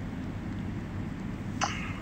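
Steady low background rumble, with one short sharp noise about one and a half seconds in.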